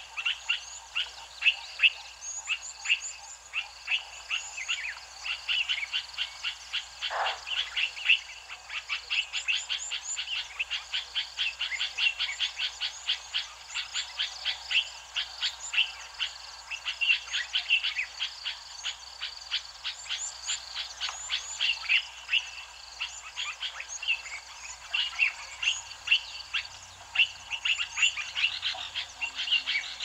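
A dense chorus of frogs calling in short, rapidly repeated notes, with birds chirping higher above it. About seven seconds in, a single call falls steeply in pitch.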